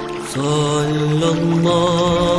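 A devotional salawat sung or chanted in long held notes with accompaniment; the sound dips briefly just after the start, then a new phrase begins.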